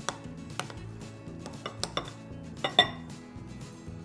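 Metal spoon stirring powdered sugar and peanut butter in a glass mixing bowl, knocking and scraping against the glass in a string of sharp clinks, the loudest a little under three seconds in.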